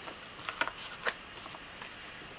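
Paper being handled: a short run of soft rustles and small crackles in the first second, then a faint hiss.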